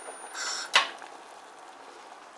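Gas hob burner being switched off: a short hiss-like noise, then a single sharp click of the control knob a little under a second in.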